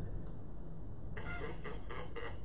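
Quiet room tone with a low steady hum. From about a second in, faint, indistinct broken sounds join it.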